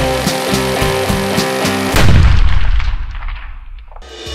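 Rock music with a steady drum beat, broken about two seconds in by a single loud, deep gunshot whose tail fades away over the next two seconds.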